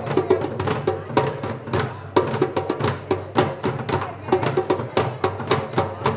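A drum ensemble playing a fast, steady rhythm on hand drums, struck with sticks and hands. The drumming starts suddenly right at the outset.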